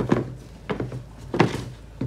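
A pair of Puma Court Guard sneakers being set down and shifted on a tabletop: a few dull thunks of the soles against the table, the loudest about one and a half seconds in.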